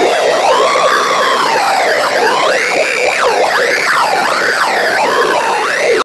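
Electronic music with the beat dropped out: several layered synth tones wavering and sliding up and down in pitch, siren-like, over a thin high hiss.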